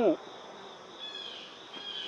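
Faint steady insect chorus in the outdoor background, with a couple of short high chirps about a second in and again near the end.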